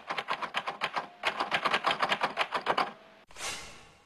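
An editing sound effect: a rapid run of sharp clicks, about a dozen a second, lasting about three seconds. A short whoosh follows near the end as the picture wipes away.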